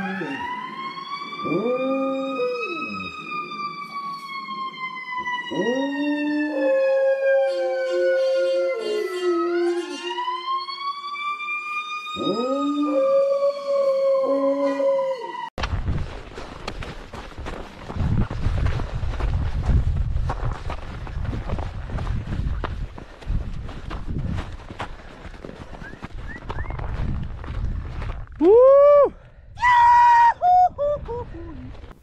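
A golden retriever howling in several drawn-out howls along with a siren that wails in slow falling and rising sweeps. After a sudden cut, wind rumbles on the microphone, and near the end there is one short, loud, voice-like cry.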